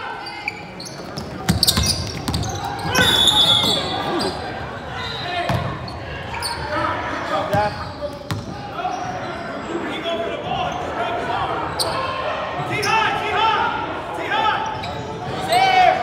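Basketball bounces and indistinct voices echoing in a large gymnasium. A short, high referee's whistle about three seconds in stops play.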